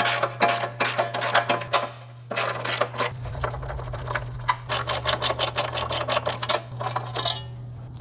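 Socket wrench ratchet clicking in quick runs as the bash plate's 12 mm bolts are undone, with a short pause about two seconds in. A steady low hum runs underneath.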